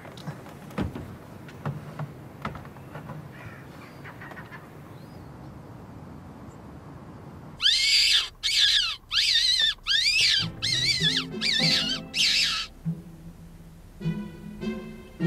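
Faint, low background noise with a few soft clicks. About halfway in comes a run of about seven shrill, wavering squealing calls, each under half a second. Low orchestral music comes in beneath the calls.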